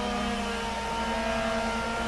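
Background ambient music: a sustained drone of held tones, with the notes shifting about halfway through.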